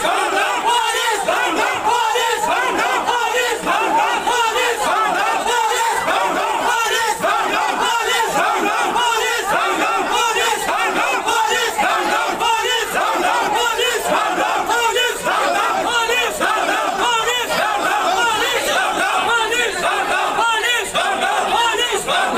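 A large crowd of protesters with many voices raised at once, overlapping into a loud, unbroken din.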